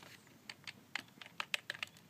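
Plastic keys of a Fujitsu computer keyboard clicking as someone types, in a quick, uneven run of about eight key presses from about half a second in.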